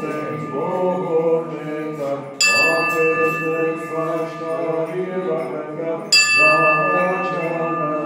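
Armenian liturgical chant sung by voices, with a bell struck twice, about two and a half and six seconds in, each strike ringing on for a second or more over the singing.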